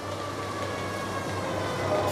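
Steady background hum with a few faint steady tones, growing slightly louder toward the end.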